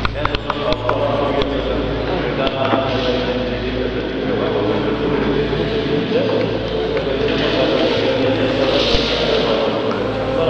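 Men's voices chanting in long held tones. There are a few sharp clicks about a second in, over a steady low hum.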